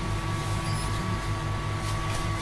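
Steady electrical hum with a low pulsing drone and a thin, high steady whine, from an appliance running in the room.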